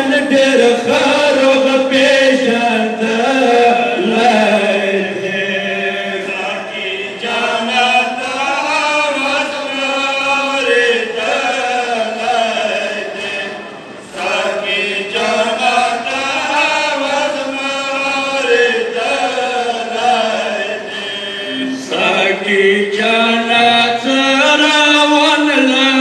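A group of men chanting a Pashto matam noha (mourning lament) together through microphones, in a continuous sung line with a brief breath pause about fourteen seconds in.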